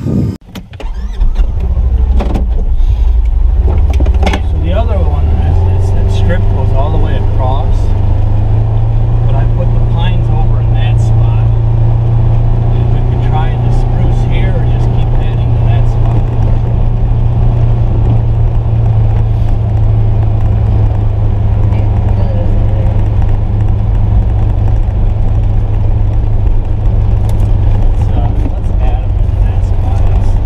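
Polaris Ranger XP 1000 Northstar side-by-side driving along a field track, heard from inside its closed cab: a steady low engine drone that comes up about a second in and holds.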